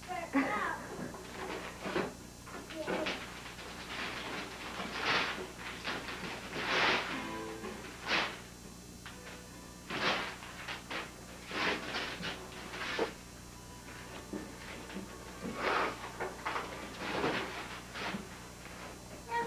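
Christmas wrapping paper being ripped off a large gift box in a series of short tearing pulls, roughly a dozen spread over the stretch.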